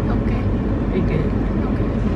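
Steady low rumble of a car running, heard from inside the cabin, with faint indistinct voices over it.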